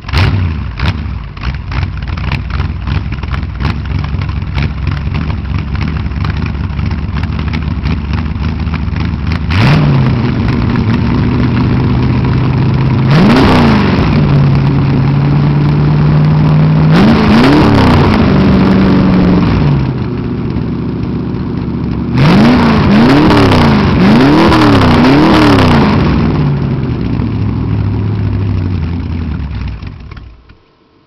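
1984 Ford Ranger's 302 cubic-inch V8 and its exhaust running: a steady idle, then raised and held a little higher about ten seconds in, with single revs around the middle and a burst of four quick revs later on. It settles back down and stops right at the end.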